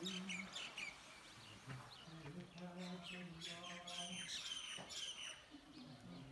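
Small birds chirping, many short, quick high calls, some sweeping downward, faint in the open air.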